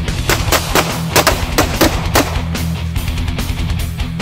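A rapid string of pistol shots, about seven sharp cracks in the first half, over guitar-driven heavy-metal background music.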